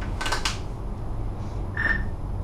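Steady low rumble inside a Leitner 3S gondola cabin running along its ropes. There is a short rattle about a quarter second in and a brief high-pitched squeak near the end.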